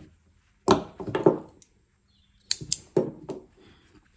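Hands handling crocheted doll pieces over a wooden tabletop: two short bursts of rustling and light knocks, about a second in and again past the halfway point.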